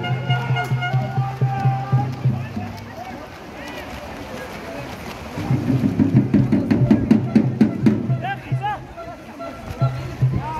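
Crowd of spectators chanting and shouting over music, rhythmic and loud. It dips for a few seconds about a third of the way through, then swells again before fading near the end.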